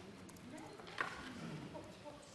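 Faint background chatter of several voices talking quietly, with a single sharp knock about a second in.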